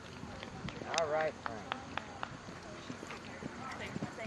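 A horse's hooves beating on the arena's sand footing at a canter, a series of sharp, fairly regular beats.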